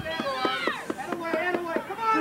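Indistinct voices of people talking and calling out, with no single clear speaker.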